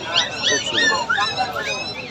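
Puppies whimpering and yipping in short, high cries, several a second and overlapping, over crowd chatter.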